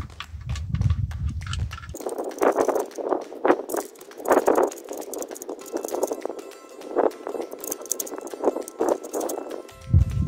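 A background song plays, its bass dropping away about two seconds in. Under it comes light, irregular metallic clicking and rattling as nuts are spun by hand onto the studs holding a trailer brake assembly.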